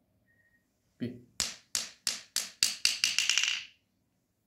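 Small red ball dropped onto a hard marble tabletop, bouncing about eight times with the bounces coming faster and faster until they blur into a short rattle as it settles.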